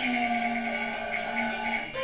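Cantonese opera accompaniment ensemble of traditional Chinese instruments playing a long steady held note between sung lines. A new note comes in right at the end.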